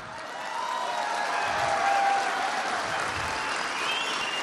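Audience of uniformed police officers, many in white gloves, applauding; the clapping swells over the first couple of seconds and then holds steady.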